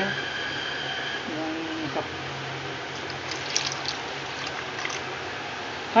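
Water being poured into a pot of thick, simmering mutton curry: a steady, even pouring rush.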